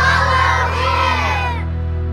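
A group of children shouting and cheering together for about a second and a half, many voices overlapping, over steady background music.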